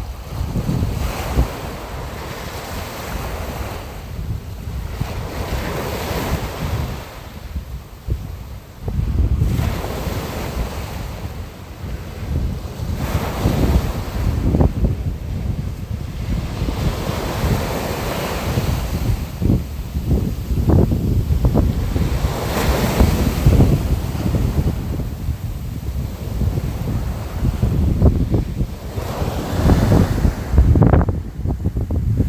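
Wind buffeting the microphone: a low, noisy rumble that swells and eases in gusts every few seconds.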